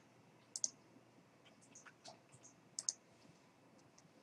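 Faint, sharp clicks of a computer mouse: a quick pair about half a second in, a few softer ticks, then another quick pair near three seconds in.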